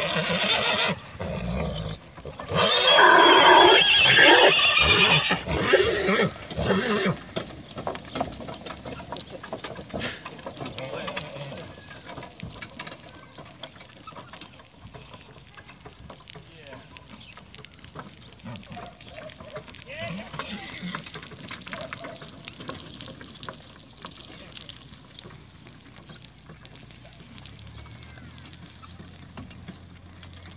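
Draft horse neighing loudly in the first few seconds, the loudest call about three to five seconds in. A pair of horses hauling a wooden farm wagon over grass follows, with faint rattling and clatter as the wagon moves away.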